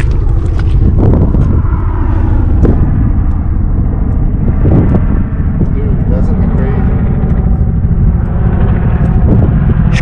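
Wind rumbling on the microphone, with faint voices underneath.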